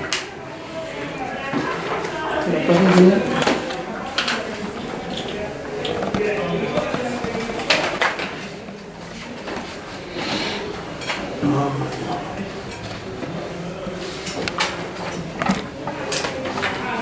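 Indistinct conversation of several people around a meeting table, with scattered sharp clicks and knocks of objects handled on the table.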